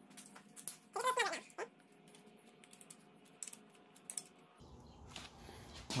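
Scattered light clicks and ticks, with one short vocal sound falling in pitch about a second in.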